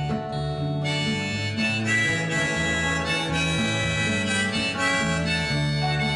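Harmonica solo played from a neck rack, held notes moving from one to the next, over strummed acoustic guitar and a bass line.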